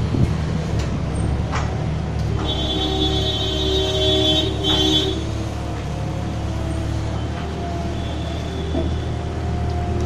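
JCB 170 skid steer loader's diesel engine running under load as it lifts and tips a bucket of muck, with a steady whine for a couple of seconds in the middle and a few short clanks.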